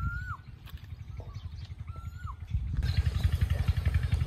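A bird calls with a short whistled note that rises and then drops, about every two seconds. Under it runs the low, pulsing rumble of an engine, which grows louder about three seconds in.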